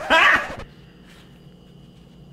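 A man's short, high-pitched screamed "Hey!", lasting about half a second.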